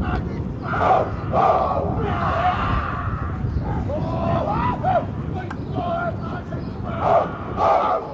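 A haka: a group of schoolboy rugby players chanting and shouting in unison.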